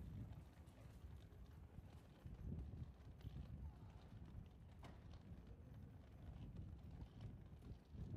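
Faint footsteps of someone walking on a tiled pavement, soft irregular thuds over a low rumble, with a faint click about five seconds in.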